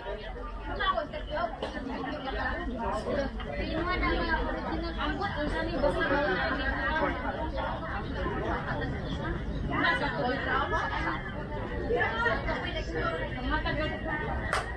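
People talking: steady, indistinct conversational chatter with several voices.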